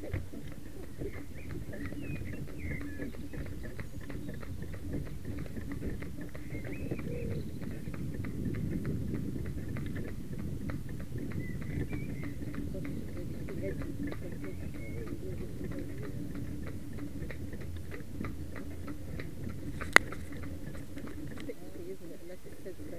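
A carriage horse's hooves clip-clopping on a tarmac lane in a steady rhythm over the low rumble of the carriage's wheels rolling on the road. A single sharp click stands out near the end.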